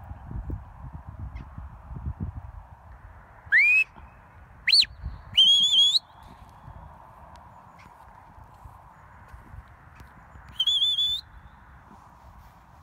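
A handler's whistle commands to a working sheepdog. Three whistles come close together about four seconds in: the first rises, the second is a quick rise and fall, and the third is held a little longer. One more rising whistle comes near the end. A wind rumble on the microphone runs underneath and is heaviest at the start.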